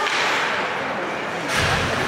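Ice hockey play on the rink: skates and sticks on the ice, with a sharp hit about a second and a half in, over spectators' voices.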